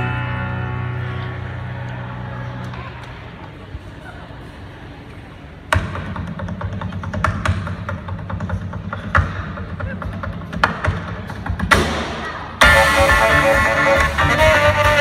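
Live band music heard from the audience: a held chord dies away over the first few seconds, then sharp percussive hits start about six seconds in, and the full band comes in loudly near the end.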